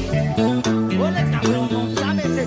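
Pagode baiano band music: a guitar line over bass, moving in stepped notes, with a few short sliding notes about a second in.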